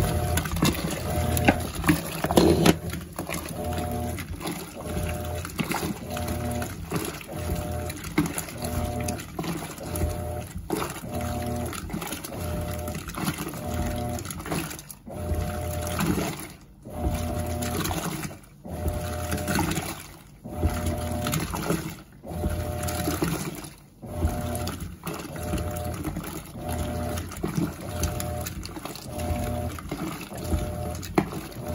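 Mueller Popmatic 8 kg top-load washing machine agitating a tub of water with no clothes, driving a Colormaq agitator: the motor hums in short strokes about once a second as it reverses back and forth, with water sloshing throughout.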